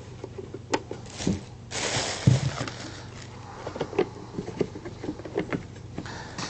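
Scattered clinks and knocks of kitchen utensils and containers being handled on a countertop, with a short rush of noise about two seconds in.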